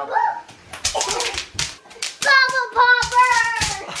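Bubble wrap popping in quick, irregular snaps under a child's running feet. From about halfway through, a child's high voice sings out over the pops.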